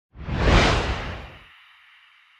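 Whoosh sound effect for an animated logo reveal: a quick swell with a deep rumble, loudest about half a second in. The rumble stops at about a second and a half, leaving a faint high shimmer that fades away.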